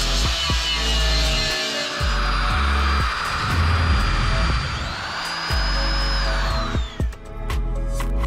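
Background music with a stepped bass line over power tools working sheet metal: an angle grinder and a drill cutting out spot welds. The tool noise carries a high whine that climbs, then falls away, and stops about seven seconds in.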